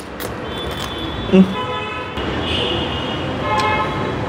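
Road traffic with a steady rushing noise, and a vehicle horn tooting twice, once around the middle and again near the end. A short 'hmm' from a man about a second in.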